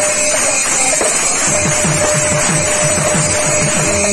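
Kirtan instrumental passage: a khol (barrel-shaped clay mridanga) played with rapid hand strokes, with small hand cymbals (gini) ringing steadily over it and a steady held tone underneath.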